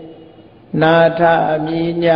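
A man chanting in Pali, holding long notes at a steady pitch. The chant breaks off briefly at the start and resumes just under a second in.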